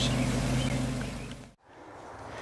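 A steady low hum fades out about a second and a half in, dropping briefly to near silence, then faint outdoor background noise.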